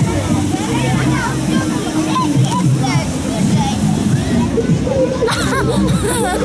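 Children's voices calling and chattering over background music with a steady bass line.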